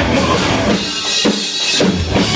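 Live punk rock band playing loud, with bass guitar, electric guitar and drum kit. The low end drops away for about a second in the middle, leaving mostly drums, and the full band comes back in near the end.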